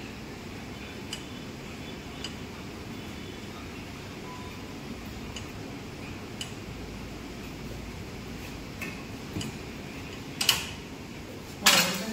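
Gym cable machine clinking faintly every second or so during behind-the-back cable wrist curls, over a steady background hum. Two much louder metal clanks come near the end as the bar is lowered.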